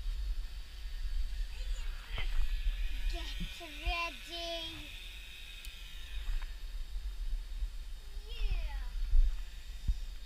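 Wind rumbling on the microphone, with short high-pitched vocal cries that bend up and down in pitch about three seconds in and again near the end.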